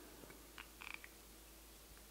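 Near silence: room tone, with one faint short sound a little before a second in as a spoon scoops mustard into a saucepan.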